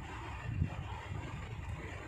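Steady low background rumble in a pause between speech.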